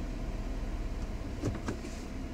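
Steady low hum inside the cab of a 2015 Ford F-150 with its 3.5-litre EcoBoost V6 idling.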